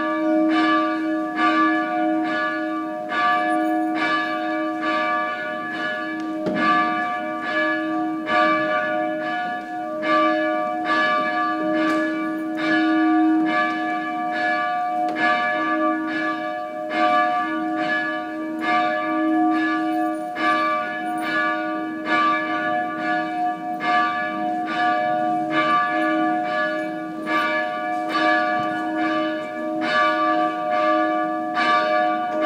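Church bells ringing without pause, struck about twice a second, their long ringing tones overlapping into a steady hum.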